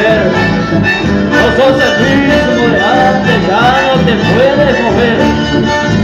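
Live band music led by accordion melody, with electric bass and acoustic guitar underneath, played loud through the PA.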